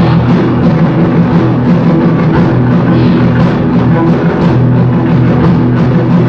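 A live ensemble of violins, cellos and electric guitar playing a Christmas carol, loud and continuous, with sustained string notes over a steady beat.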